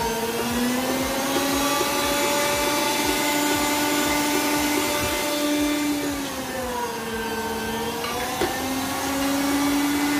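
Electric meat grinder motor running steadily while saluyot (jute mallow) leaves are pushed through it. Its hum drops in pitch about six seconds in, then picks up again near the end.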